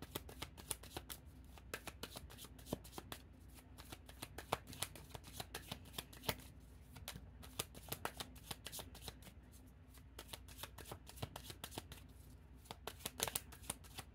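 A deck of tarot cards being shuffled by hand: a run of faint, irregular card clicks and flicks, thinning out for a few seconds after the middle before picking up again.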